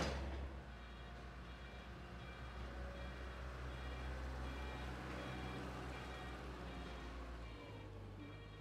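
A wheel loader's diesel engine running with a steady low rumble, while a high electronic warning beep repeats at an even pace over it.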